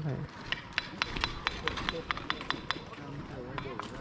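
A quick, irregular run of light, sharp taps or clicks, several a second, dying away about three seconds in.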